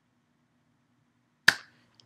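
A single short, sharp click about three-quarters of the way through, against a quiet room with a faint steady hum.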